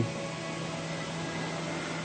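Steady background hum and hiss with a faint low tone, unchanging throughout.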